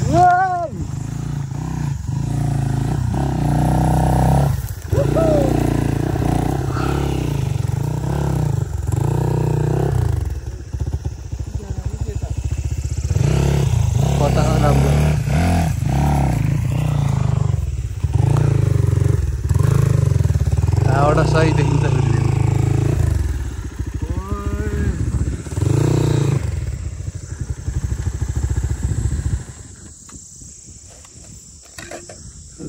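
Dirt bike engine running and revving in repeated bursts, with brief drops between them. It falls away sharply just before the end.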